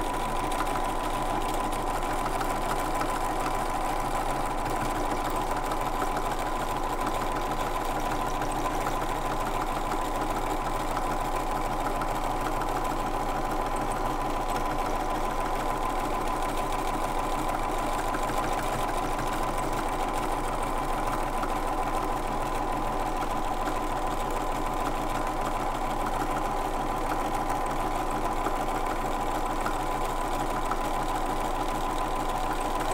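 Bernina domestic sewing machine running steadily at an even speed, its needle stitching continuously through a layered quilt block during machine quilting.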